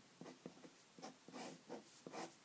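Faint scratching of a pen writing on paper, a quick series of short strokes as an answer is written and boxed.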